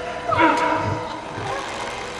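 Eerie drama underscore: a sustained drone with soft low pulses about twice a second, and a brief wavering voice-like cry about a third of a second in.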